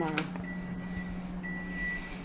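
Electronic beeper sounding one steady high-pitched beep about once a second, each beep about half a second long, over a low steady hum.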